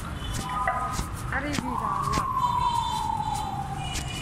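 A long, siren-like tone sets in about a second and a half in and slowly falls in pitch, over busy street noise and voices.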